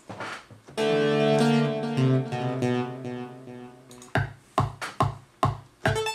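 Software synthesizer in Logic Pro sounding a held chord that fades over about three seconds, followed near the end by a string of short, deep drum hits like a bass drum being auditioned.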